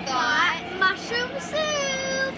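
A young girl's voice singing a short wordless phrase, ending on a long held note.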